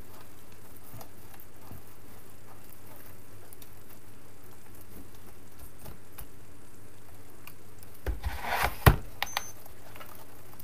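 Steady low room hum with faint handling ticks of craft materials on a table. Near the end comes a brief burst of rustling and a few sharp knocks, the loudest just before the last second, as wreath materials and a small wooden birdhouse are handled on the table.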